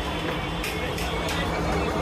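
Busy restaurant-kitchen din: a steady low rumble and hum, with voices and sharp clacks about three times a second.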